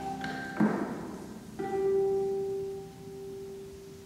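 Concert pedal harps playing: a sharp plucked attack about half a second in, then a chord about a second and a half in that rings on and slowly fades.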